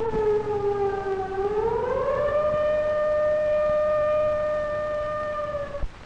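A siren sounding one long wail. It starts suddenly, dips slightly, rises in pitch about a second in, then holds a steady tone until it cuts off just before the end.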